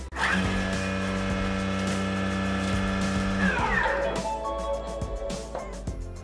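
Bimby (Thermomix) food processor motor spinning up to speed 8. It runs with a steady whine for about three seconds while its blade chops parsley, then winds down with a falling whine.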